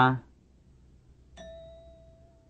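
A short cue beep on a language-drill tape: one steady mid-pitched tone with faint overtones, starting about one and a half seconds in and fading out slowly. It follows the clipped end of a spoken syllable "la".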